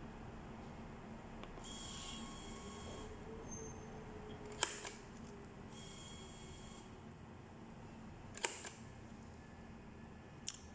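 Supvan LP5120M thermal transfer label printer feeding and printing label tape twice. Each run is a faint motor whirr with a high whine lasting about a second and a half, and each is followed a second or two later by a single sharp click.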